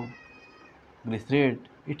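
Whiteboard marker squeaking as a loop is drawn on the board: a thin, high squeal lasting under a second. A man's voice follows briefly about a second in.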